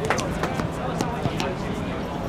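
Indistinct voices of footballers calling across an outdoor pitch, with a few sharp taps scattered through.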